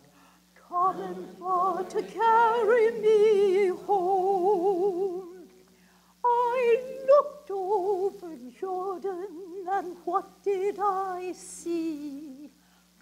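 A woman singing an African-American spiritual solo, with a wide vibrato, in long held phrases broken by a short breath just after the start and another about halfway through. A faint steady low tone runs underneath.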